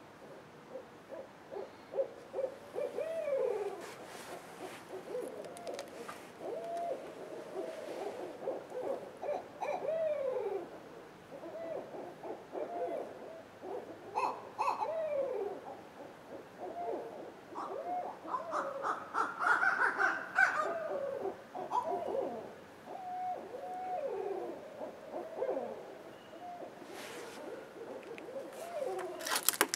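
Several owls hooting and wailing over one another in a long back-and-forth chorus of down-slurred calls, busiest and loudest about twenty seconds in.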